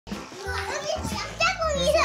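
Young children's high-pitched voices chattering and calling out as they play, getting louder in the second second.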